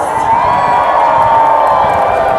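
Large crowd cheering and shouting, with one long high-pitched shout held above the noise that slowly falls in pitch.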